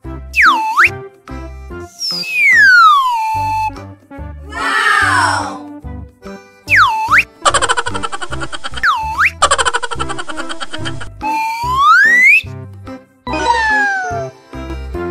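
Children's background music with edited-in cartoon sound effects: whistle-like tones that swoop down and up several times, one long falling glide and one long rising glide. A rapid, even buzzing rattle runs through the middle.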